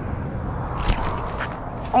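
A steady rumbling rush of wind on the microphone, with a sharp swish about a second in as the rod is jerked to set the hook on a flounder. A few light clicks follow as the baitcasting reel is handled and cranked.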